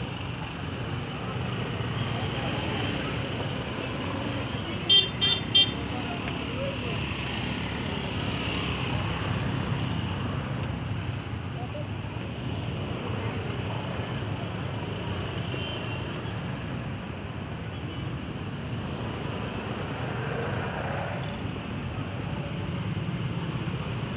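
Busy market street traffic: vehicle engines running at low speed with a steady hum of passing traffic and people's voices. About five seconds in, a vehicle horn gives three short toots in quick succession.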